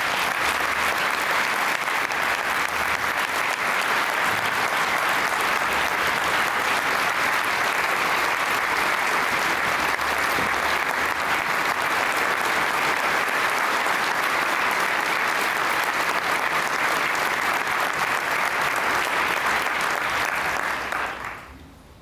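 Audience applauding steadily, a dense clapping that runs for about twenty seconds and dies away near the end.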